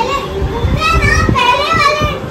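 Young children playing, with a child's very high-pitched wavering squeal or sung note for about a second, starting about a second in.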